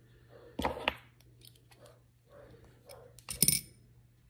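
Small metal parts, such as optic mounting screws, clinking against each other and the bench as they are handled. There are two clusters of clicks: one just over half a second in, and a louder one about three and a half seconds in with a short metallic ring.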